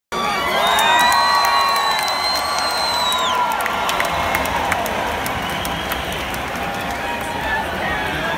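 Concert crowd cheering between songs. Loud, long whoops from people near the recorder come in the first three seconds, then fall away into steady crowd noise, with scattered claps.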